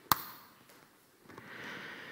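A single sharp click just after the start that dies away quickly, then a faint soft hiss in the second half.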